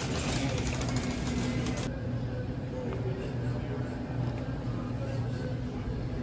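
Store background: a steady low hum with faint voices in the background. For the first two seconds there is rustling as the phone rubs against a fleece jacket.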